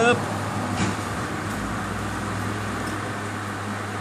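Steady low background hum over even noise, with a faint low rumble swelling briefly about halfway through.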